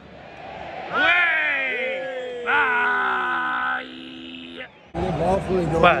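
Football stadium crowd groaning: one loud falling 'ooh' about a second in, then a held shout from nearby fans. The sound cuts off suddenly about five seconds in, and a man starts talking just before the end.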